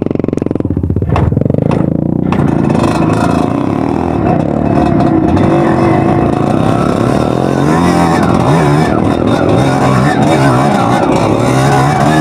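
Dirt bike engine running under way, its revs rising and falling again and again as it is ridden over rough ground.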